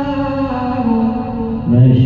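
Quran recitation in measured tarteel style: a single voice holds a long melodic note that steps down in pitch twice, then a new, lower phrase begins near the end.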